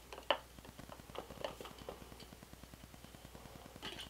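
Faint handling noise from two wigs on mannequin heads being held and turned: a few soft clicks and light rustles, with one sharper click just after the start.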